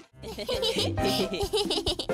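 Cartoon characters laughing together over light background music, starting after a very short gap at the scene change.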